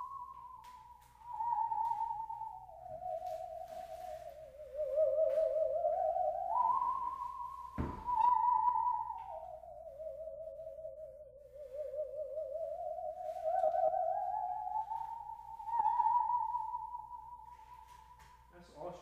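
Musical saw bowed in a slow melody of long, sliding notes with a wide vibrato. A single knock about halfway through.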